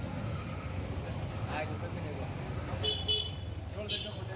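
Street traffic with a steady low engine rumble; a vehicle horn gives two short, high beeps about three seconds in.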